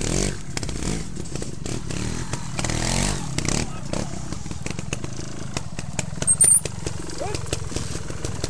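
Trials motorcycle engine running at low revs, the throttle blipped twice so the pitch rises and falls. About six seconds in there is a short high squeak.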